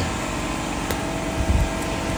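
A steady mechanical hum with a single faint click about a second in.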